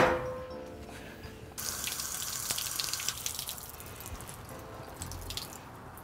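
Water from a garden hose at an outdoor spigot running over fiberglass exhaust header wrap to soften it, starting about a second and a half in and stopping shortly before the end.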